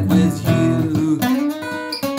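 Acoustic guitar strummed, a run of chords played between sung lines.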